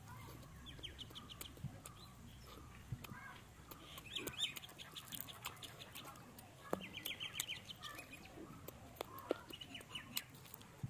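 Chewing and lip-smacking while eating roasted chicken off the bone, heard as scattered soft clicks. Birds call in the background in three quick runs of high chirps.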